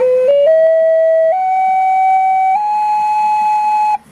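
Native American flute played note by note up its scale, two quick short notes and then three held ones, climbing to the octave of the bottom note. The notes are being checked against a tuner for 432 Hz tuning after the finger holes were reworked.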